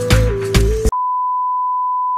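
Background music with a steady beat cuts off about a second in and is replaced by a steady, single-pitched test-tone beep of the kind played over TV colour bars.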